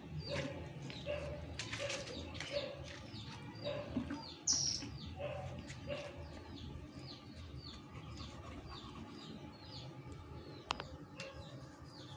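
Small birds chirping in the background: a steady run of short, quick falling chirps, several a second, with lower repeated notes in the first half.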